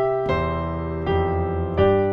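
Piano playing slow, sustained chords: a C major chord over a low C bass note rings, further chords are struck about a third of the way in and halfway through, and a G fifth comes in near the end.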